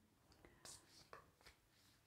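Near silence: room tone, with a few faint soft clicks.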